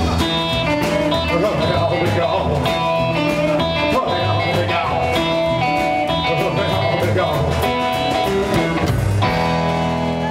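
Live rock and roll band playing, with acoustic and electric guitars over an upright bass. About nine seconds in the band lands on a final chord that is held and rings on.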